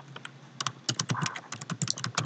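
Typing on a computer keyboard: a run of short key clicks, few at first and coming quickly from about half a second in.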